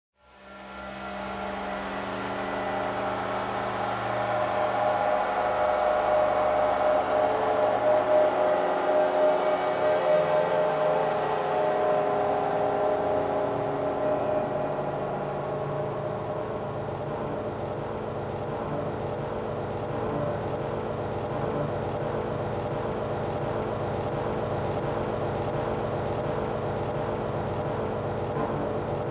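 Ambient electronic music intro: sustained synth pad chords fade in from silence in the first second and hold steady with no beat. The top end slowly dulls from about halfway through.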